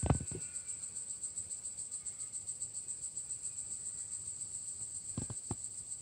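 Insects trilling steadily outside, a high-pitched, rapidly pulsing drone. A sharp knock at the very start and a few softer knocks about five seconds in.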